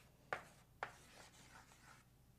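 Chalk writing on a blackboard: two sharp taps as the chalk strikes the board, then faint scratching as it is drawn across in short strokes.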